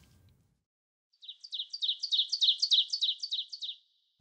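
Bird chirping: a quick, even run of high chirps, about seven a second, starting about a second in and lasting a little over two seconds.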